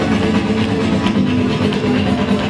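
Flamenco guitar music in the guajira style, played steadily.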